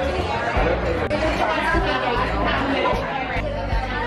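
Background music with a steady bass line and beat, over excited chatter from several voices.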